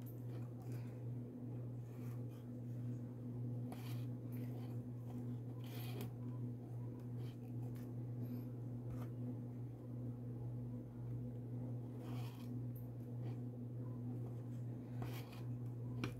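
Quiet handling of macramé threads on a clipboard: soft rustles and a few light ticks a couple of seconds apart as the cords are passed over the base thread, over a steady low hum.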